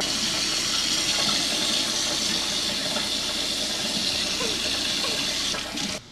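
Steady rush of running water that stops just before the end.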